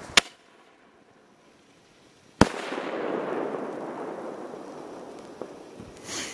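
Homemade 2.5-inch (63 mm) aerial firework shell: a sharp report as it is launched, then about two seconds later, matching its 2-second delay fuse, a loud bang as the shell bursts. A noisy tail follows the bang and fades over about three seconds.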